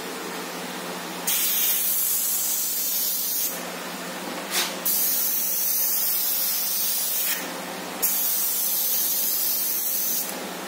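Gravity-feed airbrush spraying paint in bursts of hiss: three long bursts of two to three seconds each and one brief puff between them, over a steady low hum.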